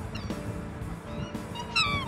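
Background music holding steady chords, with a black swan's short high call falling in pitch near the end and a few fainter thin calls just after the start.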